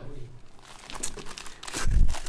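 Soft, irregular rustling and crinkling of paper being handled, with a low bump near the end.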